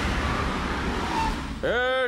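A car running: a steady engine noise with a low rumble. A man's voice begins near the end.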